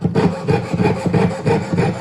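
Jeweler's saw, a fine blade in a hand frame, cutting silver sheet in a steady rhythm of back-and-forth strokes.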